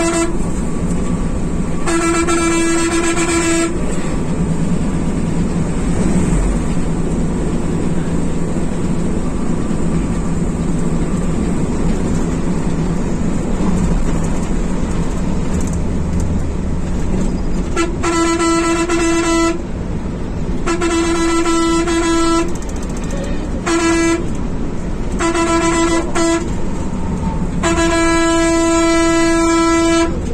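Volvo B11R coach driving at speed, heard from the driver's cab, with a steady engine and road rumble. Its horn sounds once about two seconds in, then from about eighteen seconds on in a series of short and long honks, the last held about two seconds near the end.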